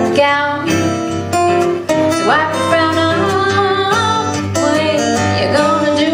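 Live acoustic folk band playing: a strummed acoustic guitar with cello, and a melody in long held notes.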